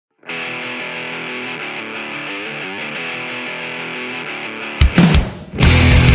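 Opening of a pop-punk rock song: a thin, filtered-sounding guitar part plays held chords for the first few seconds. About five seconds in, the full band crashes in much louder with distorted guitars and drums, dips for a moment, then drives on.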